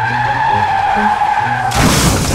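A motorcycle tire skidding on dirt with a steady squeal. Near the end it is cut off by a sudden loud crashing noise as the bike runs into the shed's clutter.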